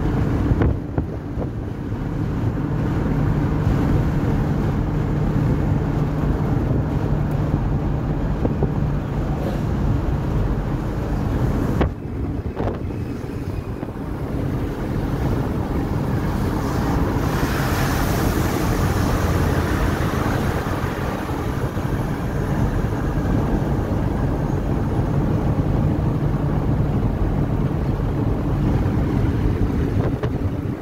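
Engine and road noise heard inside a moving vehicle's cabin, with wind noise on the microphone. The sound drops briefly about twelve seconds in, and a hiss rises for a few seconds past the middle.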